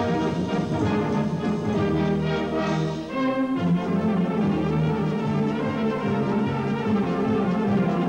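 Full brass band of cornets, horns, trombones and lower brass playing a loud contest piece, with held chords under busy upper parts; the sound dips briefly about three seconds in and a new chord comes in.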